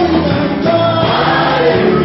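Gospel song: a man singing into a hand-held microphone with a choir singing along, the voices holding long, gliding notes over steady low accompaniment.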